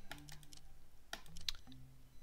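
A few sharp, scattered clicks at a computer while the slot game's bet is being lowered, over a faint low hum.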